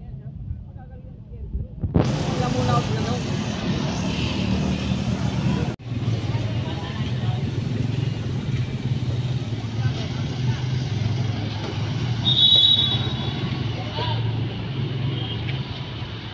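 Street traffic noise, with vehicle engines running steadily as a low hum, starting suddenly about two seconds in. A brief high tone sounds near the end.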